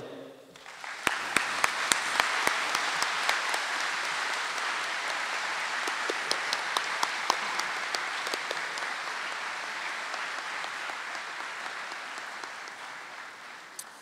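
Audience applause that starts about half a second in and slowly dies away, with sharp individual claps standing out early on top of the steady clapping.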